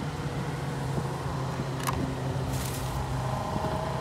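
Steady low mechanical hum, like a running vehicle engine or air-conditioning unit, with a sharp click about two seconds in and a brief hiss just after.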